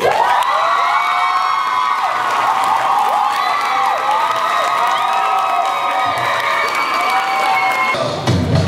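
An audience cheering and shouting, many high voices held and rising together, breaking out suddenly at the start and going on without letting up.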